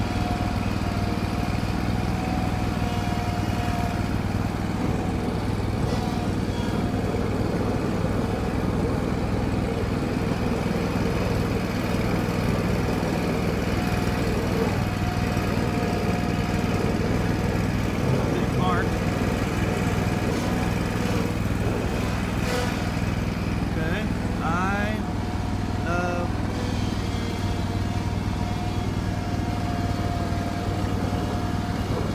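Lawn mower engine running steadily while cutting grass, with a higher whine that comes and goes.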